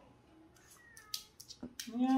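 Quiet room with a pet's faint, short high-pitched whine about a second in, and a few light clicks in the second half.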